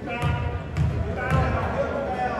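A basketball being dribbled on a gym floor: three bounces about half a second apart, with voices in the gym behind them.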